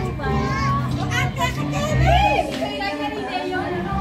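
Lively chatter of several voices, with one high rising-and-falling call about two seconds in, over background music.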